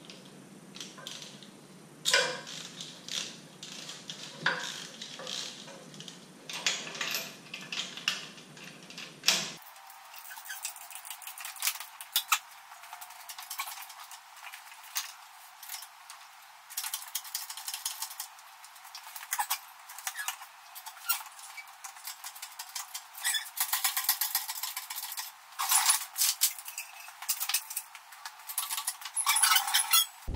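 Irregular metallic clinks and rattles of chain and steel parts as a Cummins cylinder head is worked free and lifted on an engine-hoist chain. The sound is thin and tinny, with no low end, and the clinks come thicker in the second half.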